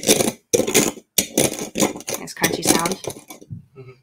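Rim of a ceramic mug twisted and pressed into coarse turbinado sugar on a ceramic saucer: about six short gritty scrapes and crunches, ceramic grinding on sugar grains, as a sugar rim is made.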